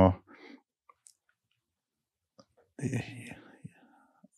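Only soft conversational speech, broken by about two seconds of near silence in the middle.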